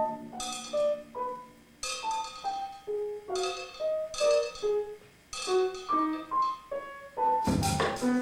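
Grand piano and drum kit improvising together: sparse, separate struck notes and percussive hits, each ringing briefly, at about two or three a second, with a louder cluster near the end.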